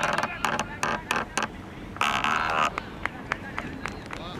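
Cricket players and onlookers shouting and clapping after a shot. There are scattered claps and calls in the first second and a half, and one loud shout about two seconds in.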